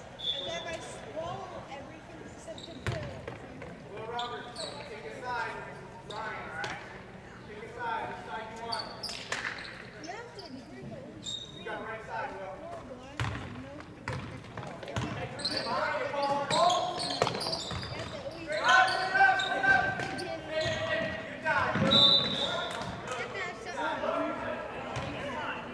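Basketball game in a gymnasium: a ball bouncing and thudding on the hardwood court under the talk and shouts of players and spectators, all echoing in the large hall. The voices grow louder in the second half.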